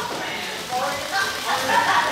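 Voices talking in a large hall, mostly speech with nothing else standing out.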